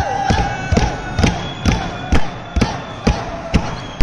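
Steady, evenly spaced thumps about twice a second, over the voices of a crowd.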